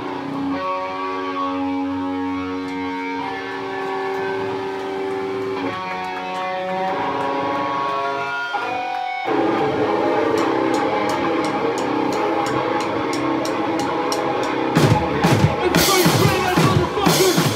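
Live heavy band: an electric guitar lets notes and chords ring out for about nine seconds, then breaks into a denser, distorted riff with steady cymbal ticks keeping time. The full drum kit comes in hard near the end.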